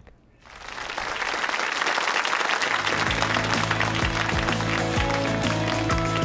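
Audience applause swells up about half a second in. About three seconds in, upbeat theme music with a steady beat joins it and carries on under the clapping.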